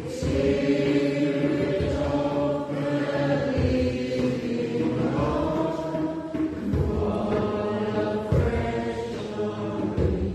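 Slow hymn sung by voices together, with long held notes that move in pitch every second or two.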